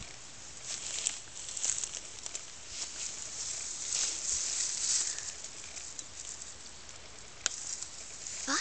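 Tall grass rustling as a person moves through it and pushes and handles the stalks and leaves. The rustling is loudest in the middle, and there is a single sharp click near the end.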